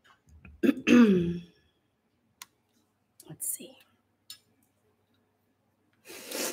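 A short wordless vocal sound with falling pitch about a second in, then a few faint clicks and rustles of a harmonica being handled and brought up to the mouth.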